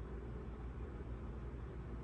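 Room tone: a steady low hum with faint hiss and no distinct sounds.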